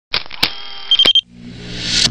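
Logo-intro sound effects: a few sharp clicks in the first second with a short pulsing beep just after one second in, then a whoosh that rises in loudness and pitch.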